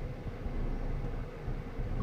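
Low, steady rumble of a train passing over a level crossing, heard from inside a car cabin.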